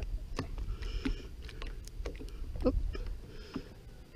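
Low rumble of wind on the microphone, with a few faint clicks and knocks of handling.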